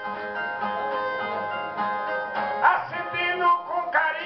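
Two Brazilian ten-string violas plucked together in the instrumental opening of a cantoria de viola (repente), with a man's voice starting to sing a little past halfway.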